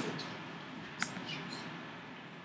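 One sharp click about a second in, with a few fainter ticks, over a low steady room hiss. It is a click at the computer that advances the setup wizard to its next page.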